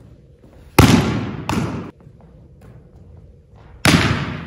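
Volleyball spiked hard by hand: a sharp echoing smack, then the ball slamming onto the wooden gym floor less than a second later. A second spike cracks out near the end.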